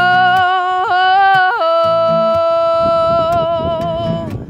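A female singer draws out a sung vowel with no words over a strummed acoustic guitar. Her voice turns up and down through a few quick notes, then holds one long steady note with vibrato until near the end.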